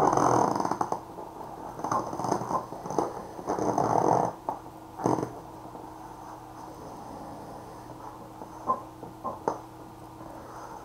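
A man's heavy breathing, several loud breaths in the first half as he strains leaning forward, then a few sharp clicks near the end over a faint steady hum.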